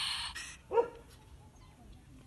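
European polecat in a cage trap hissing defensively, the hiss breaking off about half a second in, then one short, sharp yelp just under a second in.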